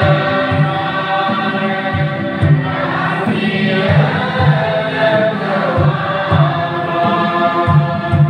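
Many voices singing a hymn together, with a drum keeping a steady beat of about two strokes a second.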